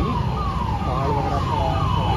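An electronic siren sounding a rapid, repeating falling tone, about three sweeps a second.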